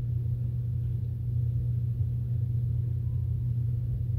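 A steady low hum that holds one level, with no other events.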